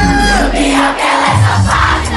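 Loud party music with a steady beat, over a large crowd of fans shouting and cheering.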